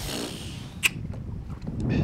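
A baitcasting fishing reel being handled: one sharp click a little under a second in, then a few faint ticks, over a steady low wind rumble.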